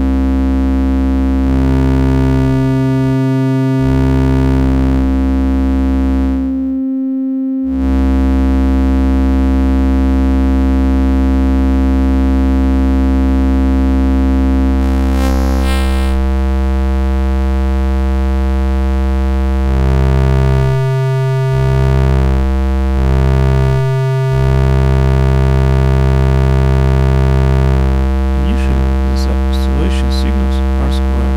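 Analog Eurorack VCO (kNoB Technology η Carinae) droning a low, buzzy pitched tone. Its sub-oscillator octaves (f/2 and f/4) cut in and out several times, shifting the weight of the bass and the tone. The tone drops out almost completely for about a second near seven seconds in.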